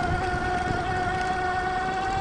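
Fat-tire e-bike's 1000 W rear hub motor whining at a steady pitch under power, over a low rumble as the tyres roll across bumpy grass.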